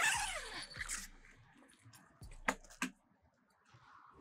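Tent-camper entry door being unlatched and swung open: a short rush of rustling noise with a brief falling squeak at the start, then two sharp clicks about two and a half seconds in.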